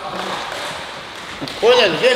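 Speech only: a man's voice, loud near the end, over the steady noise of a large room.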